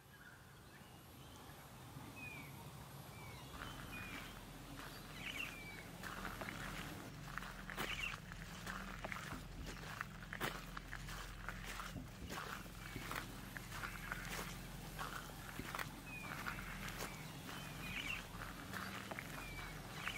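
Footsteps crunching along a dirt and gravel bush track, with short chirping bird calls every few seconds.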